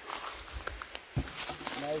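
Outdoor rustling with a few faint clicks and a soft thud about a second in, then a man's voice starting near the end.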